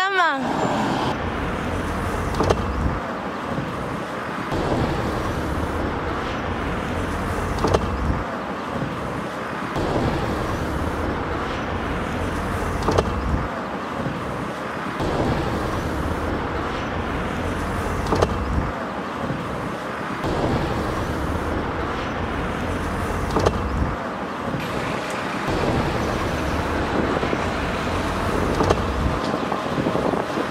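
A small pickup truck driving, heard from its open cargo bed: a steady engine and road noise, heaviest at the low end, with a short knock or rattle every few seconds.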